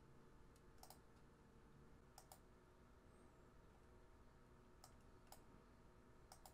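Near silence with a handful of faint, short clicks, some in quick pairs.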